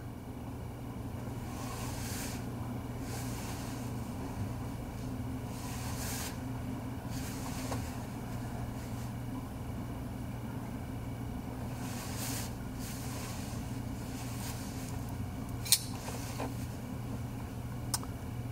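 Steady low hum of room noise, with a few faint soft handling rustles and one sharp click near the end.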